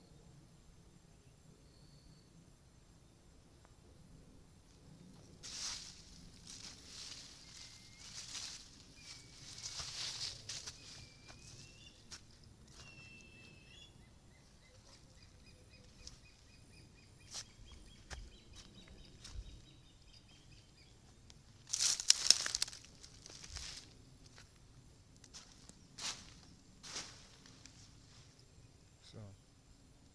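Intermittent rustling of dry grass and footsteps as someone walks through vegetation, the loudest burst about two-thirds of the way through. Faint chirping bird calls come in the background.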